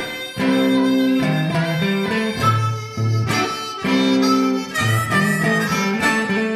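Hohner harmonica playing a blues solo in held notes, each lasting about half a second to a second, over a strummed guitar accompaniment.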